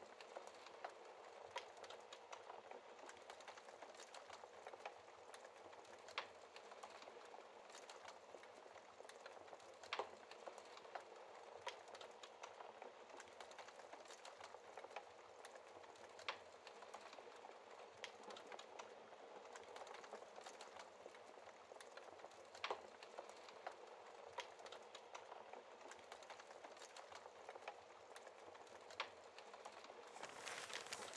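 Wood fire crackling in a fireplace, faint: a soft steady hiss with many small irregular pops and a sharper snap every several seconds.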